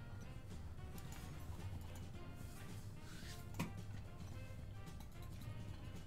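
Quiet background music from an online slot game, with the soft effect sounds of symbols tumbling on the reels and one sharper effect sound about three and a half seconds in.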